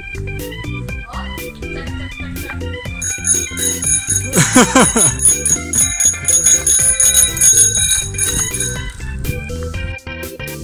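Background music with a steady beat, and a bicycle bell ringing over it again and again from about three seconds in until near the end.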